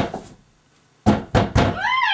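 A single loud thud at the start, then a quick run of three or four heavy thumps about a second in, followed near the end by a voice whose pitch rises.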